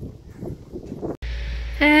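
A hiker's light footfalls and trekking-pole taps on asphalt, as faint irregular knocks. About a second in, the sound cuts to a steady low wind rumble on the microphone, and a woman starts speaking near the end.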